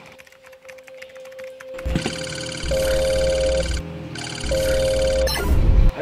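Incoming-call ringtone on a smartwatch: two rings, starting about two seconds in, followed by a loud low thump just before the end.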